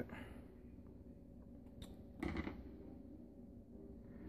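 Quiet kitchen room tone with faint handling noise, a small click and then a brief soft knock about two seconds in; the blender is not running.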